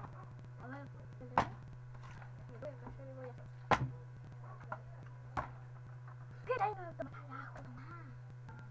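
A plastic soda bottle knocks down hard onto a wooden table twice in bottle-flip attempts, about a second and a half in and again near four seconds, with a couple of lighter knocks after. Faint voices and a steady low hum sit underneath.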